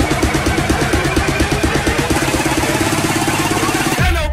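Electronic dance music build-up: a buzzy synth stab repeated rapidly, about ten times a second, that tightens into a continuous roll near the end, leading into a drop.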